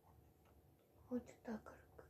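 A young woman's soft voice, a short word or two about a second in, otherwise near-quiet room tone.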